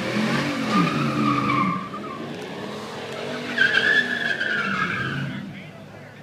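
Tires squealing in a burnout, with the engine revving underneath. The squeal breaks off about two seconds in, comes back higher-pitched about a second and a half later, and fades out near the end.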